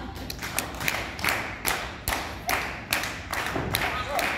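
Audience clapping in a steady rhythm, about two and a half claps a second, to urge on the wrestlers.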